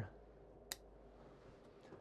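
A single sharp snip of bonsai scissors cutting a shimpaku juniper tip, about two-thirds of a second in; otherwise near silence.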